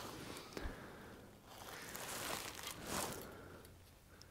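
Faint rustling and light handling noise from gloved hands setting a telescoping gauge inside a cylinder bore, with a small click about half a second in.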